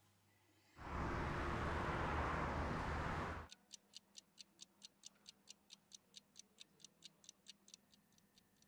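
A loud rushing noise lasting under three seconds, then a pendulum wall clock ticking about four times a second.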